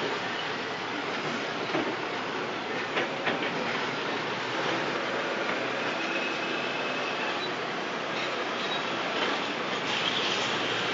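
Heavy earth-moving machinery at work: bulldozer and rock haul truck diesel engines running under a steady clatter of metal, with a few sharp knocks about two and three seconds in.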